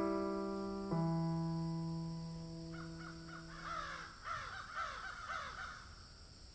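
Piano notes ring out and fade, with a fresh low note struck about a second in. From about three seconds in, a crow caws over and over.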